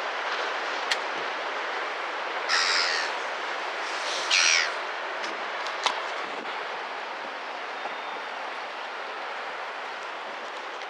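Gull calling twice, a harsh high call a little after two seconds in and a second one with a falling pitch about a second and a half later, over a steady background hiss. A couple of sharp clicks are also heard.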